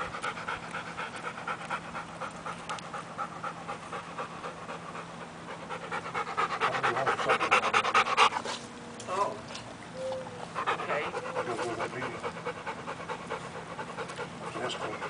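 A dog panting hard and fast, about four breaths a second, after heavy play, louder for a couple of seconds around the middle.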